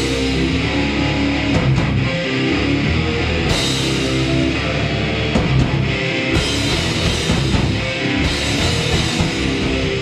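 Live heavy metal band playing loud and steady: distorted electric guitars, bass guitar and drum kit.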